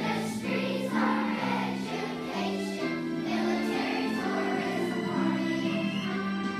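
A large children's choir singing together in unison, with piano accompaniment, held notes moving steadily from one to the next.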